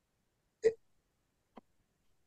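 A pause in a conversation, silent except for one brief, sharp sound from a person's mouth about a third of the way in, and a faint tick a second later.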